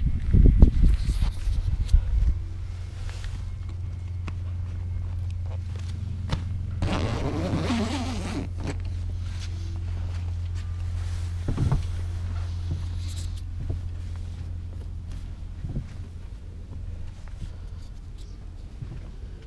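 The zipper on a canvas tent-trailer wall is pulled once, a raspy run of nearly two seconds about seven seconds in. Low thumps of steps and handling come near the start, and a few light clicks follow later, over a steady low hum.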